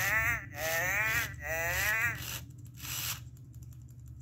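A 1998 first-generation Furby chattering in its synthesized Furbish voice: a few short, warbling sing-song phrases with wobbling pitch for about two seconds, over the low whirr of its motor, then going quiet.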